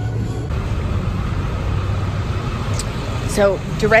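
Street ambience: a steady low rumble of road traffic, with a woman starting to speak near the end.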